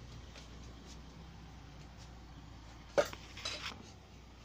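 Metal spoon working against an aluminium pot as leftover cooked rice is scraped out: faint scrapes and ticks, then one sharp clink about three seconds in, followed by a short bout of scraping.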